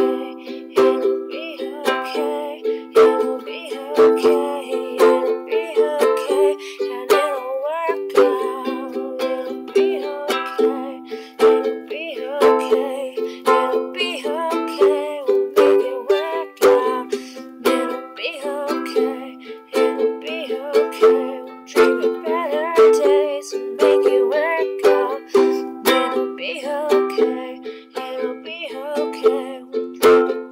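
Ukulele strummed in a steady rhythm, the chords changing every few seconds.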